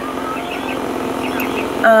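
Steady noise of a car idling, heard from inside the cabin, with faint snatches of a voice over it.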